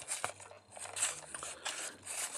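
Hard plastic parts of a transforming toy robot figure being moved by hand, with a couple of small clicks and faint scuffing as a panel is raised.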